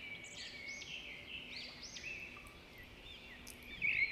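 Birds chirping in the background: many short rising-and-falling calls, one after another, fairly faint, over a faint steady low hum.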